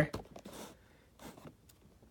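Faint handling noise: a few soft knocks and rustles near the start and again a little past one second in, otherwise quiet.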